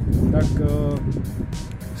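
A man's speech over background music with a steady beat, with a low rumble underneath.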